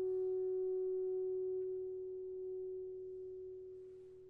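Alto saxophone holding a long steady final note over a fading piano chord, the sound of a movement's closing bars. The saxophone tone tapers away in the last couple of seconds.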